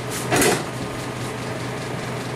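Steady low workshop background hum, with one short breathy noise about half a second in.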